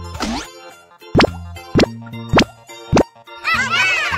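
Four cartoon pop sound effects, each a quick upward blip, about half a second apart, over light children's background music. A rising sweep comes just after the start and a wobbly, bouncy effect near the end.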